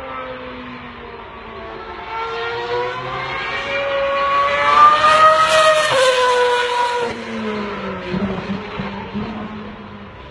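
Sauber C32 Formula 1 car's Ferrari V8 engine passing at speed: its high-pitched engine note climbs and grows louder as it approaches, is loudest about five to six seconds in, then drops sharply in pitch as it goes by and fades away.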